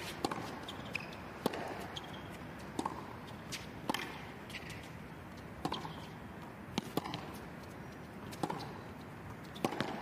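Tennis rally on a hard court: rackets striking the ball back and forth, with crisp hits about every second and a quarter, and short squeaks between shots.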